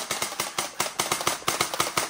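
Motorized toy blaster firing in rapid full-auto, a steady stream of sharp clicking shots at about ten a second.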